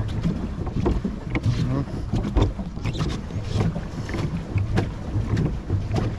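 Pedal boat under way: its paddle wheel churns the water, with irregular splashes and knocks. Wind buffets the microphone, and faint voices can be heard.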